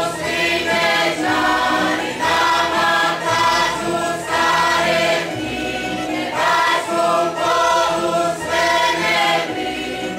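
A group of voices singing a Croatian folk song together in short phrases, over a tamburica band with a double bass.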